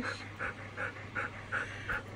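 Golden retrievers panting close up, a quick steady rhythm of about three breaths a second.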